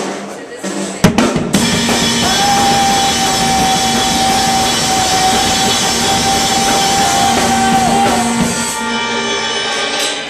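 Drum kit played hard with cymbals washing, under a steady sustained tone from an electronic keyboard, in a short soundcheck burst. It starts with a loud hit about a second in and stops shortly before the end, the cymbals ringing out.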